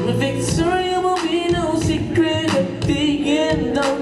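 Live R&B band with a lead singer holding a long, wavering wordless vocal line over bass, drums and held keyboard chords.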